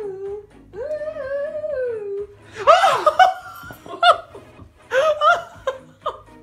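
A cat's long, drawn-out meow, rising, held and falling away, then loud laughter in several short bursts.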